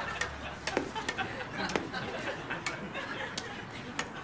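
Indistinct murmur of voices, with scattered light clicks and knocks.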